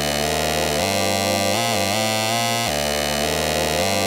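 Rage type beat in a drumless break: layered synthesizer chords hold steady, with a few short pitch bends in the lead. The drums and 808 are out.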